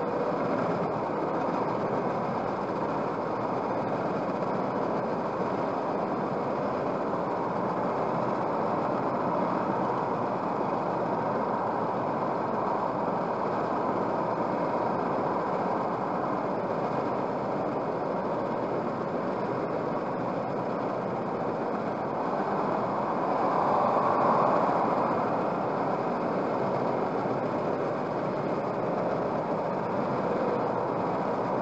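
Steady road and engine noise of a car cruising at motorway speed, heard from inside the cabin, with a brief swell about three quarters of the way through.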